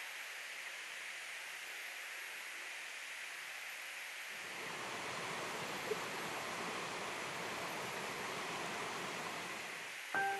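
A soft, steady outdoor hiss, then from about four seconds in the fuller, louder rush of a shallow stream running over rocks.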